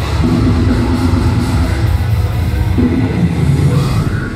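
A deathcore band playing live at full volume, heard from within the crowd. Low guitar and bass notes are held over the drums, and the riff changes near the end.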